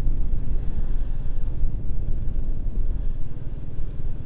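Wind rushing over a handlebar-mounted camera on a motorcycle riding at road speed, mixed with the bike's engine: a loud, steady, low rumble.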